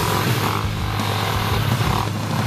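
Enduro dirt bike engine running under throttle as the bike rides through a shallow river, with water spraying off the wheels, then pulling up onto the gravel bank.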